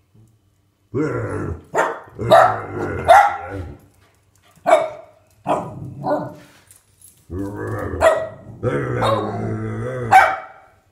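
Small dog barking repeatedly in short, sharp barks, among low growls, at a plush toy dog it treats as an intruder in its house.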